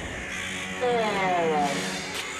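A cartoon character's wordless vocal cry: one drawn-out note, about a second long, falling steadily in pitch.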